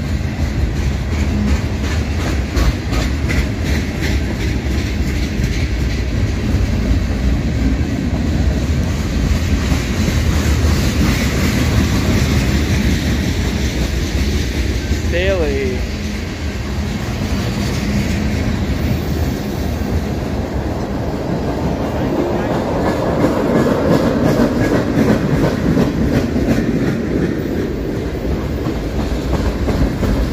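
Freight cars of a long CSX manifest train (boxcars, tank cars and covered hoppers) rolling past close by: a steady rumble of steel wheels on the rails, with a run of clicking as the wheels pass.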